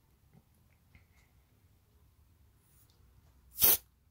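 A single short hiss from an aerosol antiperspirant can, pressed once for about a third of a second near the end, after a few seconds of near silence.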